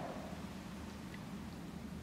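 Quiet hall room tone: a steady low hum, with two faint ticks about a second in.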